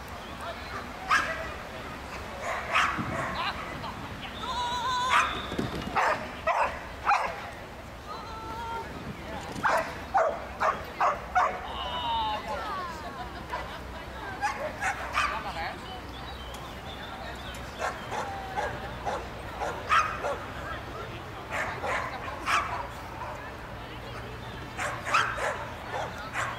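A dog barking and yipping in repeated short bursts, with people's voices in the background.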